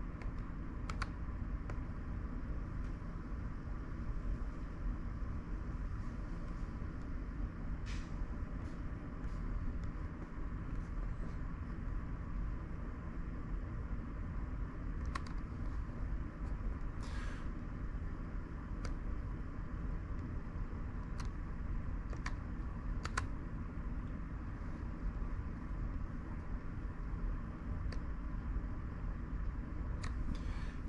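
Steady low hum and whir of an old laptop running, its hard drive failing and noisy. Faint single clicks come now and then as menus and settings are clicked open.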